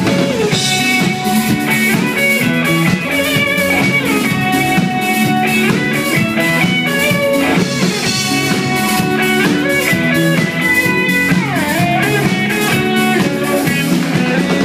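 Live rock band playing an instrumental passage without vocals: electric guitar over bass and a steady drum-kit beat. Near the end a note is bent down and back up.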